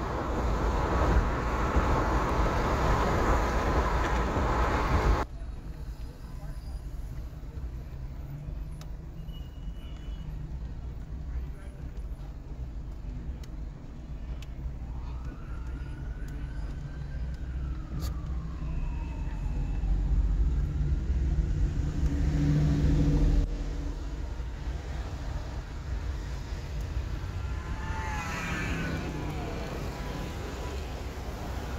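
Road and tyre noise heard inside a car at freeway speed, cutting off suddenly after about five seconds to the quieter low hum of the car moving slowly in city traffic. Around the middle a faint siren rises and falls once, and a louder rumble from a vehicle comes and goes later on.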